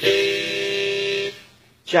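Hohner Thunderbird diatonic harmonica in low F, with a wooden comb, sounding one chord. The chord is held steady for just over a second and then dies away.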